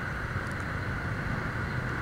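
Steady low rumble and hum of slow, dense motorbike traffic, heard from among the scooters.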